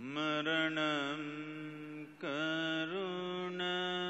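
A man chanting a mantra in long held notes: two drawn-out phrases, each opening with a slide up in pitch, with a short break about two seconds in and a small step up in pitch a second later.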